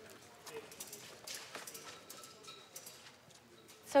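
Faint, irregular clicks and taps at low level, with no steady tone. A man's voice starts right at the end.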